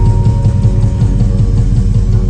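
A post-punk band playing live and loud, with electric guitars, bass guitar and drums, heard through a recording taken from the crowd.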